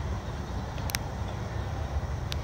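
Freight train rolling away on the rails, a steady low rumble from its wheels and cars, with one short sharp click about a second in.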